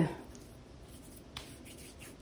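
Faint rubbing of fingers spreading face cream over the back of a hand, with one soft tick partway through.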